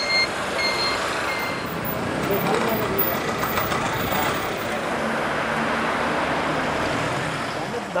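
A vehicle's reversing beeper sounds three short high beeps, about two a second, stopping about a second and a half in. Steady road noise of vehicles follows, with indistinct voices mixed in.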